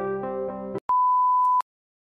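Background music cuts off and a single steady, high censor bleep sounds for under a second, standing in for harsh words.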